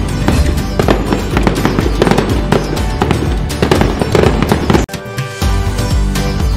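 Fireworks crackling and bursting in quick succession over background music, breaking off briefly about five seconds in before the music carries on.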